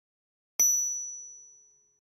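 A single high-pitched ding about half a second in, one clear ringing tone that fades away over about a second and a half.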